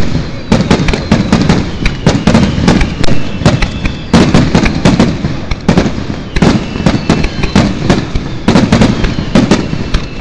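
Fireworks display: aerial shells bursting in a dense, irregular barrage of loud, sharp bangs, several a second, over a continuous low rumble.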